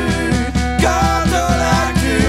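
A folk-pop band playing on drum kit, guitar, accordion and a brass bass horn, with a bass line pulsing about four notes a second. A melody line comes in just under a second in.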